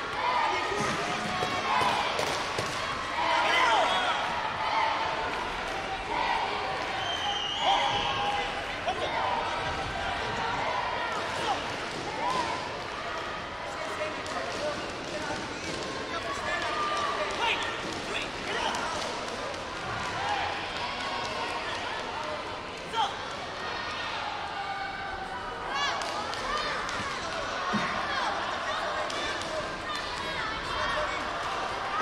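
Voices calling out in a large hall over a taekwondo sparring bout, with scattered thuds of kicks and feet on the mat; one sharp thud about 23 seconds in.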